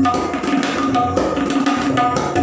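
Tabla solo in teentaal, the 16-beat cycle: a fast, dense run of strokes on both the treble dayan and the bass bayan, the drumheads ringing between strokes.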